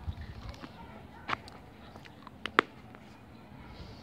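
Handling noises from hand-sewing a crocheted handle onto a bag ring with a needle: a few soft knocks at the start, a sharp click about a second in, and two quick clicks close together past the middle.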